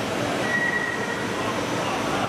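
Steady machine-shop background noise, with a brief high squeal starting about half a second in.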